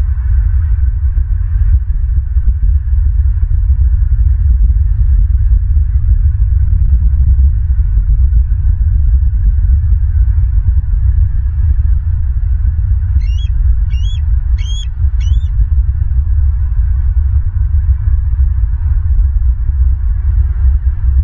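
A steady, loud low rumble runs throughout. Over it, a bird gives four short, high calls about two-thirds of a second apart, each rising and then falling in pitch.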